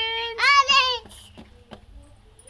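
A young boy singing a wavering, held note of a children's song, breaking off about a second in. A few faint ticks follow.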